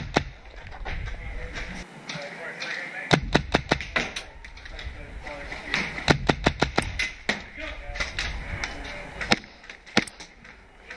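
Tippmann M4 HPA airsoft rifle firing on semi-auto: a quick string of about six shots about three seconds in, another string about six seconds in, then single shots.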